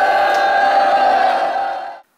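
A loud voice holding one long note on a steady pitch, then cutting off abruptly.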